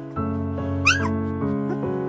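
Background piano music with sustained notes, and about a second in a single short, high-pitched squeal from a two-and-a-half-week-old golden retriever and flat-coated retriever cross puppy, its pitch rising then dropping.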